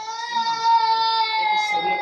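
A high-pitched voice holds one long, wailing note that swells in the middle and sinks slightly in pitch before it stops.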